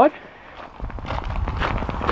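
Footsteps on gravel: irregular crunching steps starting a little under a second in.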